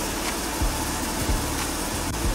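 Steady background hum of room noise, with a few soft low knocks as things are handled in her lap.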